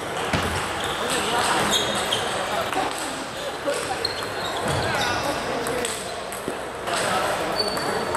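Table tennis balls clicking off bats and table in a rally, with short ringing pings, over a steady murmur of voices in a reverberant sports hall.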